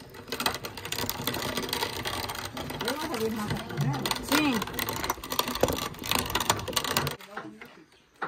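Hand-cranked cast-iron grain mill grinding dry split peas, lentils and grain into powder: a steady, gritty crunching of the beans between the grinding plates that stops about seven seconds in.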